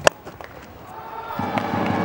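Cricket bat striking the ball with one sharp crack, then the stadium crowd's noise swelling about a second and a half later as the shot runs away.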